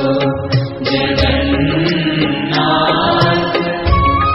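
Devotional music: a chanted hymn sung over instrumental accompaniment, with low drum beats underneath.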